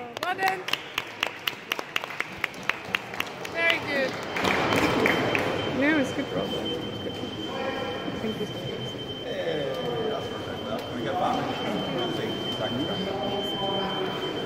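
Rapid, regular hand clapping, about five claps a second, for the first three and a half seconds, applauding the end of a grappling bout; then spectators chattering, echoing in a large hall.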